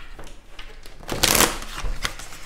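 A deck of tarot cards being shuffled by hand: a patter of cards slipping and ticking against each other, with a dense flurry of card edges flicking through the fingers a little over a second in.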